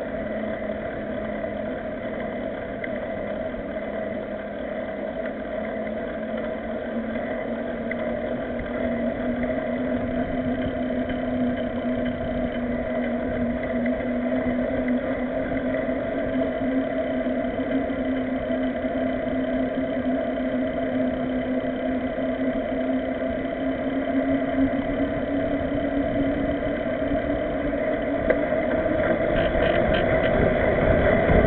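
A bicycle riding on asphalt, heard from a camera on the bike: a steady hum from knobby mountain-bike tyres on the road with a rushing noise over it. The hum rises a little in pitch about a third of the way in and the whole sound grows slowly louder, as the bike picks up speed.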